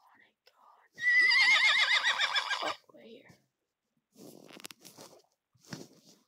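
Horse whinny sound effect: one loud neigh of about two seconds with a rapidly quavering pitch that falls away.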